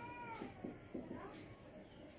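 A cat meows once, briefly, at the start, the pitch rising and falling; faint ticks of a marker writing on a whiteboard follow.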